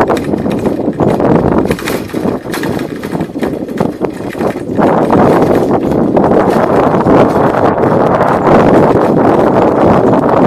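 Continuous rattling and knocking of a ride over a rough rural lane, with a dense rushing noise that gets louder a little before halfway through.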